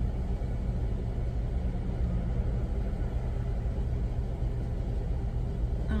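Car engine idling, a steady low rumble heard from inside the cabin while the car waits in line.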